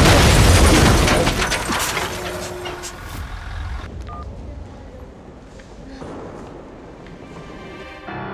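Aftermath of a car crash between two minivans: a loud, low rumbling crash with clattering debris for the first second or two, fading away over the next few seconds to a quiet low rumble.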